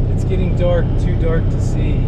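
Pickup truck driving at speed, heard from inside the cab: a loud, steady low drone of engine and road noise, with brief voices over it.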